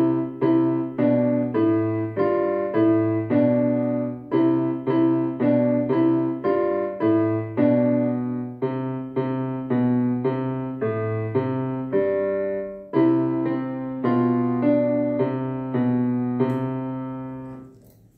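Electronic keyboard played with a piano voice: a slow hymn in steady block chords over a bass line. It ends on a held final chord that dies away near the end.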